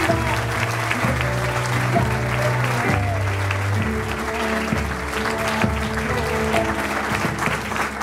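Audience applauding, with music playing over a sound system.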